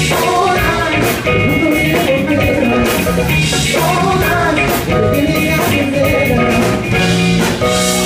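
Live band playing a song with electric guitar and drum kit, a male lead voice singing over it.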